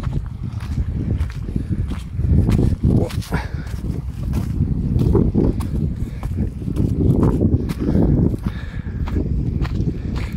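Footsteps of a person walking on a sandy, stony footpath, under a loud, uneven low rumble.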